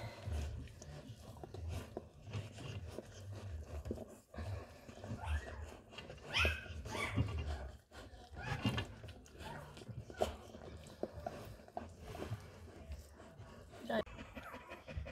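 Newborn puppies squealing and whimpering: several short, high, rising cries, clustered in the middle, over soft low thuds and rustling.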